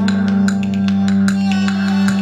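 Live instrumental music: electric guitar notes over a steady held low bass note, with light percussive ticks.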